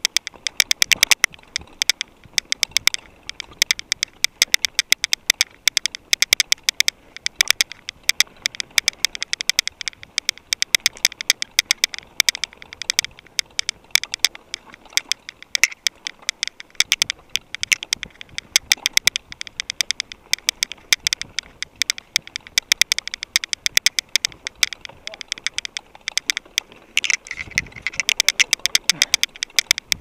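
Mountain bike rattling over a rough dirt trail: a dense, irregular run of sharp clicks and knocks as the bike's parts shake over the ground.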